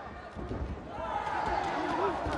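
Arena crowd noise with voices and shouting from the seats, swelling about halfway through, over a few dull thuds.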